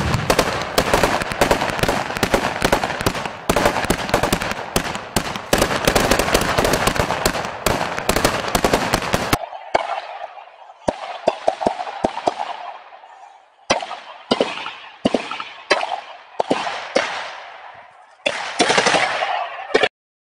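Heavy automatic rifle fire, dense and continuous, cuts off suddenly about nine seconds in. It is followed by separate shots and short bursts about a second apart, each echoing.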